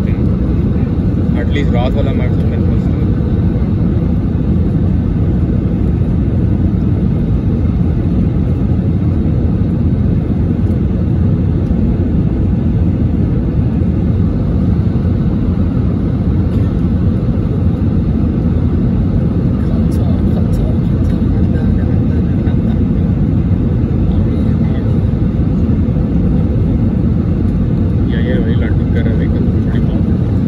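Airbus A320 cabin noise on final approach: a loud, steady, low roar of the engines and the air rushing past the airframe with the flaps extended, heard from inside the cabin.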